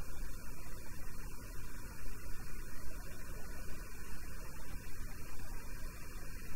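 Steady low hum with a faint hiss: background noise on the recording microphone, with no distinct events.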